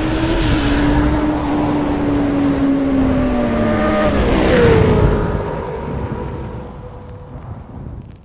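Motorcycle engine sound effect: a steady engine note that sags slowly, revs up sharply about four and a half seconds in, then fades away.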